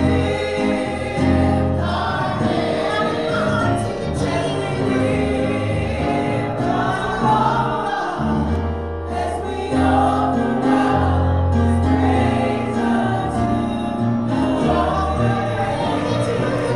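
Gospel praise team of women singing together into microphones, with instrumental accompaniment holding sustained bass notes underneath.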